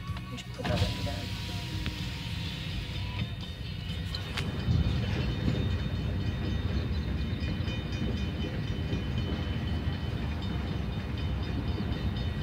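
Freight train of autorack and covered hopper cars rolling past, a steady rumble of wheels on the rails that grows louder about five seconds in.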